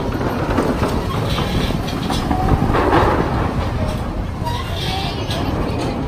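Steady, loud rumbling noise of a busy outdoor amusement area with faint voices mixed in, a little louder about three seconds in.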